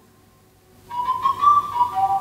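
Film soundtrack: the music dies away to a near-silent pause, then about a second in a single high, wavering whistled melody starts up.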